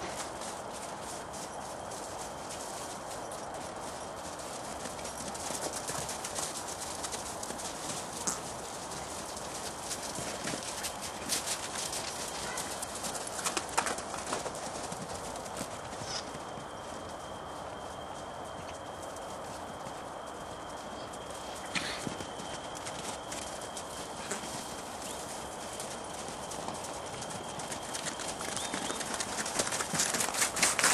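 Welsh ponies' hooves clip-clopping as they move about, a continuous patter of many quick hoof strikes that grows busier at times.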